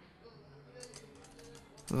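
Typing on a computer keyboard: a quick run of faint key clicks, thickest in the second half.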